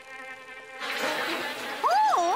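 Cartoon sound effect of buzzing bees, swelling into a loud swarm buzz about a second in, with a warbling, wavering tone near the end.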